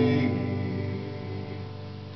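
Final strummed guitar chord of a song ringing out and fading away.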